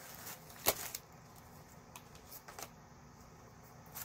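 Pre-punched paper planner folders being handled: a short rustle of paper with one sharp snap about 0.7 s in, then a few faint taps.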